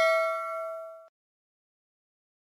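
Notification-bell 'ding' sound effect ringing out and fading, stopping abruptly about a second in.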